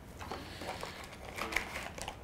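Paper and cardboard rustling as a folded leaflet is slid out of a small cardboard box, with a few light taps.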